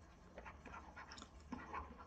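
Near silence: faint room tone with a low hum and a few weak, scattered soft sounds.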